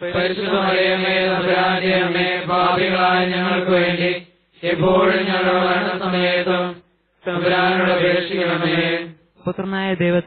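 Malayalam rosary prayer chanted on a held pitch, in three long phrases with short breaks between them.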